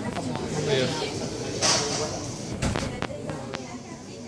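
Background voices of people talking in a busy shop, with a few light clicks and knocks and a short hiss a little under two seconds in.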